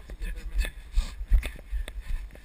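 Jogging footfalls on a dirt and grass trail heard through a carried camera: dull thumps and jolts roughly twice a second, with low wind rumble on the microphone and a faint voice in places.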